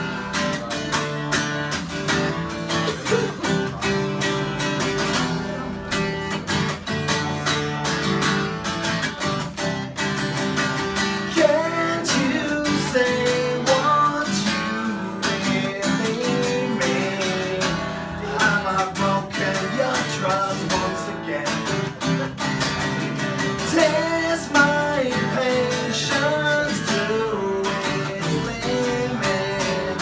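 Acoustic guitar strummed live, playing a steady song with repeated chord strokes. A man's voice sings over it from about ten seconds in.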